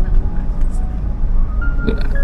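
Steady low rumble of a car driving along a road, heard from inside the car, with background music of held notes that change pitch every so often.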